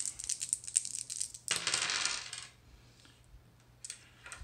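Three six-sided dice rattled in the hand, a fast run of small clicks, then thrown and tumbling across the table for about a second, halfway in.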